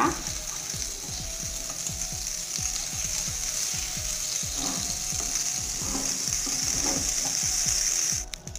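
Butter sizzling steadily in a small frying pan as it melts to grease the pan: a continuous high-pitched crackling hiss. Underneath it runs a faint low pulsing, about five a second.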